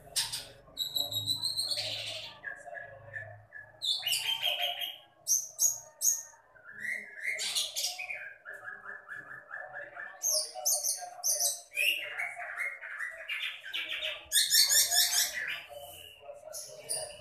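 Caged long-tailed shrike (cendet) singing non-stop, stringing together mimicked calls of other birds: trills, short whistles, buzzy notes and quick runs of repeated notes, changing every second or two. The loudest is a fast run of notes near the end.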